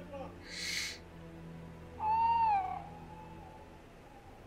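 A single owl-like hoot about halfway through: one pitched call under a second long that rises slightly and then falls. It is preceded by a brief hiss and sits over a faint steady hum.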